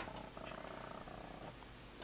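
Faint steady low hum with a faint, even whine that runs for about a second and then stops.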